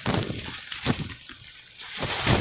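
Close rustling with a few soft knocks: a quick one at the start, one just before the middle and one near the end.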